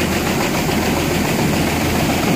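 Tractor engine running steadily while it drives a small grain auger, with grain pouring from a truck's gate into the auger hopper.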